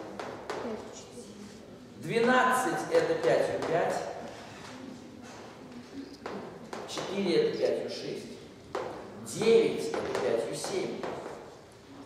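Chalk tapping and scraping on a blackboard as digits and multiplication dots are written, with short sharp taps between stretches of a man's speech.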